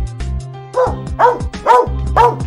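Background music with a steady beat; from just under a second in, a dog barks three times, about half a second apart, louder than the music.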